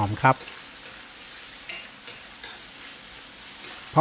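Stir-fry of pickled bamboo shoots and pork belly in red curry paste sizzling steadily in a nonstick wok over high heat, with a wooden spatula stirring and scraping through it.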